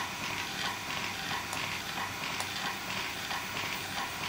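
ProMinent Sigma motor-driven diaphragm dosing pump running steadily under automatic control, a continuous mechanical whir with a few faint light clicks.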